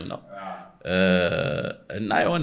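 A man's voice: a brief low murmur, then a drawn-out vowel held at one steady pitch for about a second, like a hesitation filler between phrases.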